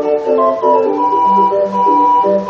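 Hand-cranked 20-note street organ playing a tune from a punched paper roll: a melody on its pipes, with a high note held in the middle, over an evenly repeating bass.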